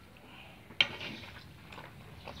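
A metal ladle clinks once, sharply, against an aluminium cauldron of stew about a second in, over a faint background of scraping and stirring.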